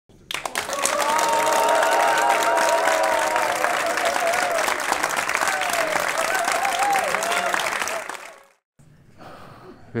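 Theatre audience applauding, with a few voices calling out over the clapping; the applause fades out after about eight seconds.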